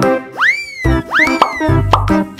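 Bright children's background music with two cartoon sound effects, each a quick upward sweep in pitch that then slides slowly down, the second following the first about half a second later.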